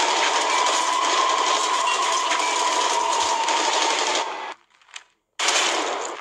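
Rapid, sustained automatic rifle fire, a dense stream of shots with a steady tone running under it. It cuts off sharply after about four seconds, and after a moment of near silence another loud burst of shooting starts just before the end.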